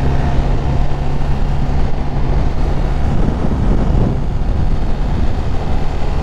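BMW motorcycle engine running steadily as a low hum while cruising, under a constant rush of wind noise on the helmet-mounted microphone.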